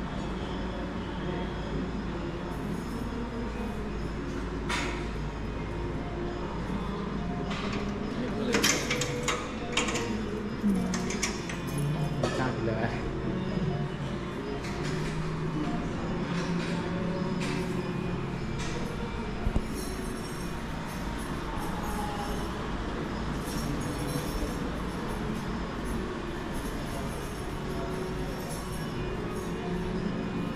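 Indistinct murmur of voices over a steady low hum, with scattered short clicks and knocks, a cluster of them near the middle and a sharp one a little later.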